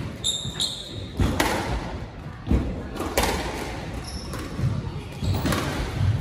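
Squash ball struck by rackets and hitting the court walls several times, each sharp crack echoing in the court. Brief high squeaks from shoes on the wooden floor come near the start and again past the middle.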